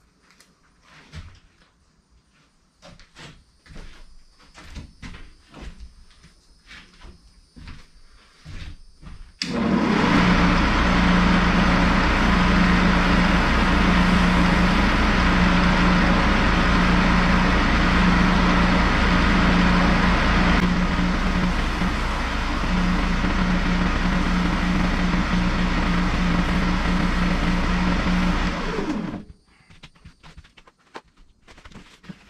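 Shopsmith lathe switched on about a third of the way in, running with a loud steady motor hum while a lacquered wood-and-resin bowl is rubbed down with a Scotch-Brite pad, then switched off and spinning down just before the end. Before it starts there are a few light clicks and knocks of handling.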